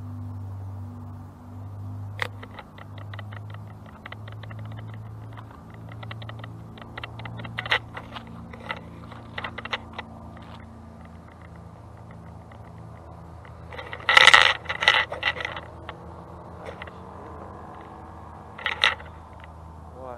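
Low, steady drone of a distant light aircraft's engine after takeoff. Over it, rapid clicking and rattling comes and goes, with louder clattering bursts about fourteen seconds in and again near the end.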